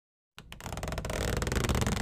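Intro-animation sound effect: a dense, rattling swell with heavy bass that starts from silence about a third of a second in and grows steadily louder, leading into intro music.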